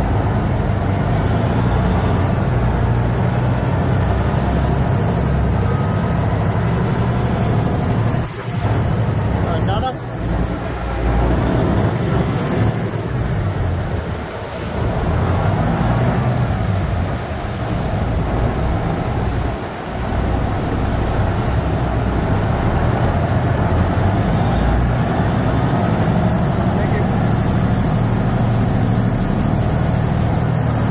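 Water-taxi canal boat's engine running loud and steady under way, with water rushing past the hull; the engine note drops back briefly a few times midway.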